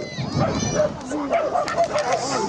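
A dog barking, in short barks.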